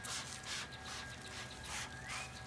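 Plastic trigger spray bottle spritzing watered-down paint in several quick hissing squirts.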